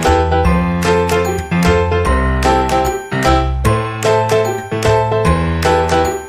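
Background music: a melody of struck notes over a bass line, moving in a steady rhythm.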